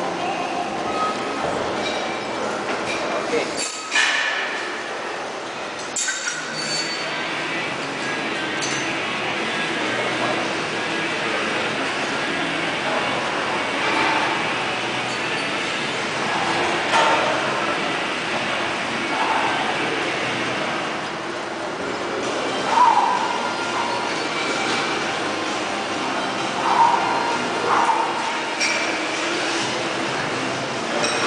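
Busy weight-room ambience: background music and distant chatter, with metal clinks of weights and bars. The loudest is a sharp clank about four seconds in.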